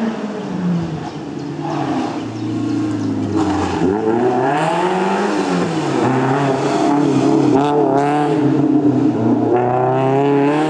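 Renault Clio Sport rally car's four-cylinder engine driven hard on a stage. The revs climb and fall repeatedly through gear changes and lifts, with a sharp drop about four seconds in and quick rises and falls as the car approaches.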